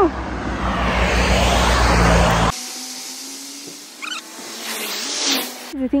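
A car driving past on the road, a loud rushing of tyres and air that stops abruptly about two and a half seconds in, followed by much quieter outdoor sound.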